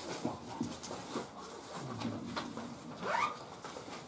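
Quiet room with a few soft scattered clicks and rustles, and brief faint voice sounds: a low murmur about two seconds in and a short rising vocal sound a little after three seconds.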